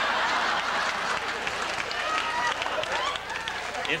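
Studio audience laughing and applauding in a steady, dense wash.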